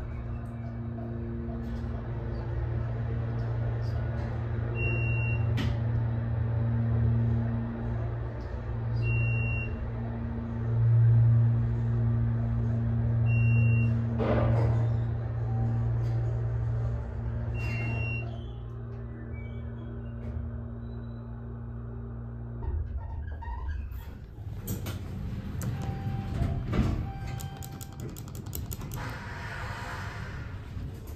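Hydraulic elevator pump motor running with a steady low hum while the car rises, with a short high beep about every four seconds, four in all, as it passes the floors. The hum stops about three-quarters of the way through, when the car has finished its climb, and a few clicks and knocks follow.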